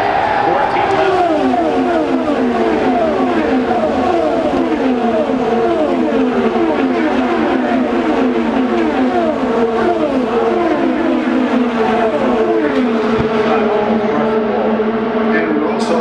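A pack of IndyCars with turbocharged V6 engines passing at racing speed, one after another. Each car's engine note falls in pitch as it goes by, the passes overlapping for most of the stretch and thinning out near the end.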